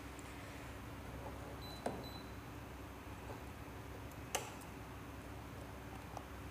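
Two sharp clicks, about two and a half seconds apart, and a few lighter ticks, as banana-plug patch cords are handled and pushed into the sockets of an electronics trainer board.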